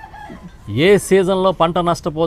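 A man speaking into a microphone after a pause of about two thirds of a second, with drawn-out vowels.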